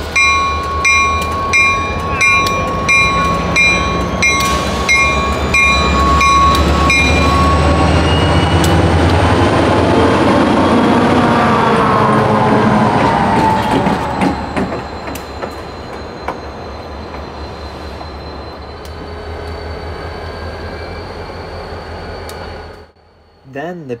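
Pair of Reading and Northern diesel locomotives passing close by, engines running, with the locomotive bell ringing about twice a second for the first seven seconds or so. The sound is loudest as the units go by, eases off after the middle as they move away, and cuts off suddenly near the end.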